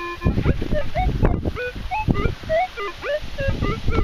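Minelab Explorer SE metal detector giving a run of short beeps that jump up and down in pitch as its large coil is passed over a freshly dug hole, still picking up the target. Low knocks and rustles of the coil and soil run underneath.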